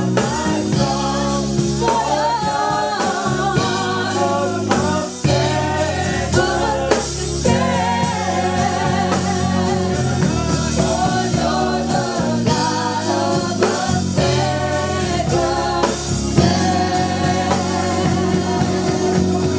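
Gospel choir singing together, many voices holding and bending long sung lines over sustained low instrumental notes.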